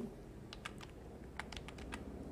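Computer keyboard typing: a quick run of faint keystrokes as a short word is typed in.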